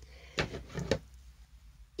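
Two brief handling noises about half a second apart, from hands turning a small gold fabric ornament, over a low steady hum.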